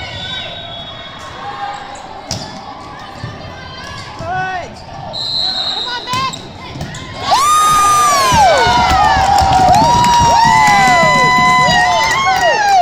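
Volleyball rally in a large gym: scattered ball hits and background chatter. About seven seconds in, loud, high-pitched shouting and cheering from many girls' voices breaks out and carries on to the end, as a point is won.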